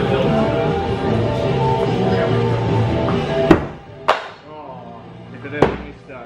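Music plays for about the first three and a half seconds, then cuts off at a sharp thwack. Two more sharp single impacts follow, about half a second and two seconds later: thrown axes striking the wooden target boards.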